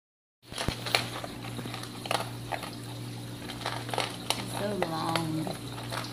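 Aquarium filter running: a steady low hum with irregular bubbling clicks. A brief low voice sound comes in about five seconds in.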